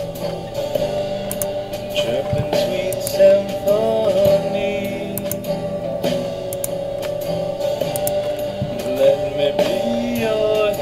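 Music: a rock song with guitar and drums, a melody line gliding over held notes.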